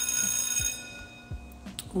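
A single bright bell-like chime struck once, ringing with several high tones and fading out within about a second.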